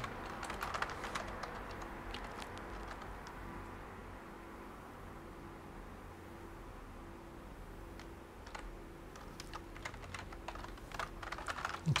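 Computer keyboard typing: quick runs of keystrokes while text is edited, thinning out to a few scattered keys in the middle, then picking up again near the end.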